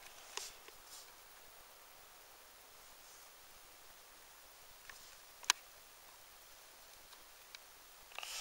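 Burning fire log, mostly quiet with a faint steady hiss and a few light crackles, the sharpest pop about five and a half seconds in.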